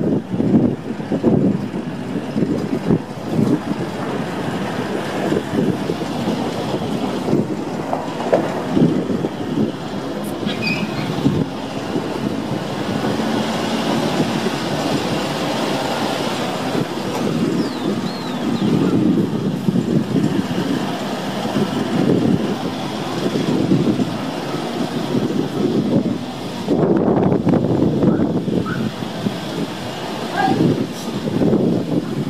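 Rumble of a vehicle driving slowly over a rough unpaved street, heard from inside the cabin, with the engine running and the body and suspension rattling and knocking over the bumps.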